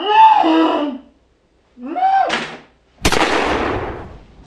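A person's voice calling out twice, without words, followed about three seconds in by a sudden loud bang that dies away over about a second.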